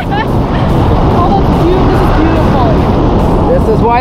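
Loud, steady wind rushing over the camera microphone during a tandem parachute descent under canopy, with faint voices showing through it.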